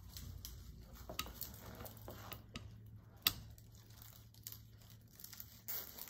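Tulle netting rustling and crinkling as it is bunched against the twigs of a grapevine wreath, faint, with scattered small clicks and one sharper click about three seconds in.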